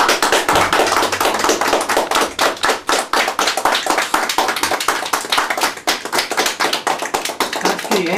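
Applause from a small audience: dense, steady hand-clapping.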